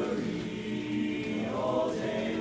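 Men's barbershop chorus singing a cappella in close four-part harmony, holding sustained chords, with a change to a new, higher chord near the end.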